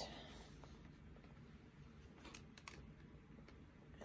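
Near silence: room tone, with a few faint ticks a little past halfway.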